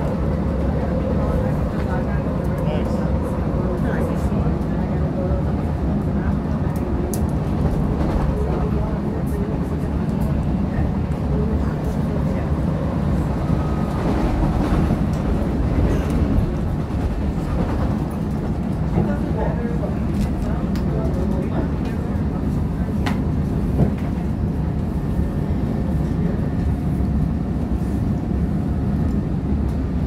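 CTA 2600-series rapid transit car running along the track, heard from inside the car: a steady low rumble of wheels and traction motors that does not let up, with faint scattered clicks and rattles.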